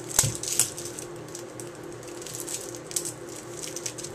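A juice box being handled and opened: a few light crinkles and clicks, mostly in the first second, as its plastic-wrapped straw is pulled off the back, then fainter scattered clicks.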